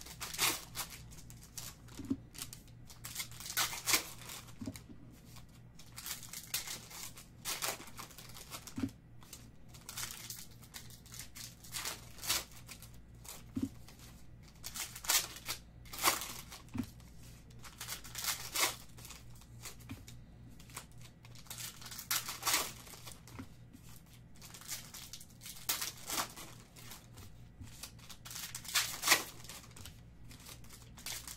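Foil trading-card pack wrappers crinkling and tearing as they are ripped open and handled by hand, in irregular bursts throughout.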